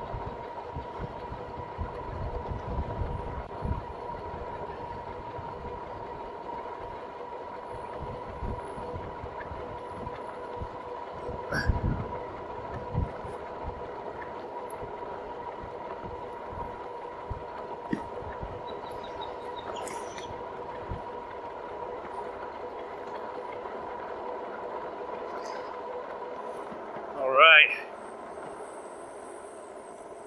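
2019 RadMini Step-Thru electric fat-tire bike cruising at about 20 mph: its geared hub motor gives a steady whine over road and wind noise. Wind buffets the microphone in the first few seconds and again about twelve seconds in. Near the end comes a brief, loud, wavering high-pitched sound, and then the motor whine stops as the bike slows.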